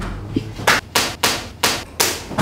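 A hand striking a person with four sharp smacks, about half a second apart, starting under a second in.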